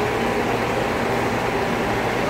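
Steady background hum and noise with no distinct events.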